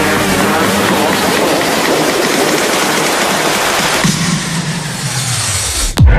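A loud rushing whoosh, a noise-sweep effect in an electronic music intro, that thins to a high hiss about four seconds in. Near the end a low tone slides downward.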